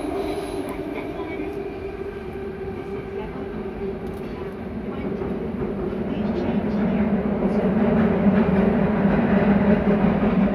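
Interior running noise of a Nagoya Meijo Line 2000 series subway train in the tunnel as it approaches a station: a steady rumble with a held low hum. It grows louder over the second half.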